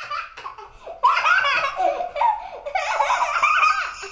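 Young children laughing and giggling in high-pitched bouts. About three-quarters of the way through, sleigh bells begin to jingle behind them.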